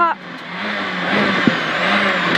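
A Peugeot 206 XS Group A rally car's engine, heard from inside the cabin as the car brakes for a tight left turn. The loudness drops sharply as the throttle closes, then the engine runs steadily with road noise, and its note falls lower near the end as the car slows.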